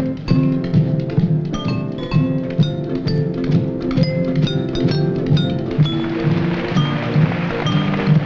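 Kitchen band playing a medley of college songs on household utensils: spoons striking glasses and jars ring out short high notes over a steady low beat.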